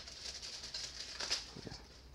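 Faint rustling and crinkling of plastic packaging as ink ribbon spools are handled and unwrapped, with a few slightly louder crinkles in the middle.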